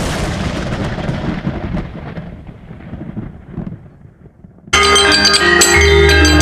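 A deep, thunder-like boom sound effect that dies away over about four seconds. About three-quarters of the way through, gamelan music cuts in suddenly and loudly, with metallophones, gongs and drums.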